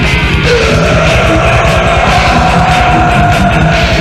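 Death/thrash metal playing loud, with a fast, dense low rhythm; a long held note bends up about half a second in and sustains to near the end.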